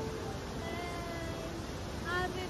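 Steady rushing roar of a large waterfall, with a faint held tone or two about halfway through.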